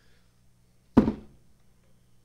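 A plastic tub of pre-workout powder set down on a table: one sharp thunk about a second in.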